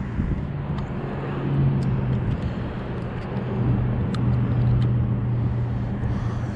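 A steady low engine drone that swells a little twice, with a few faint ticks over it.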